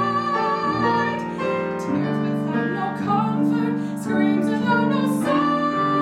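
A mezzo-soprano voice sings a musical theatre ballad with grand piano accompaniment, and a long high note begins near the end.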